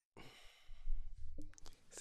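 A man's long breathy sigh into a close microphone, followed by a few faint clicks about midway through.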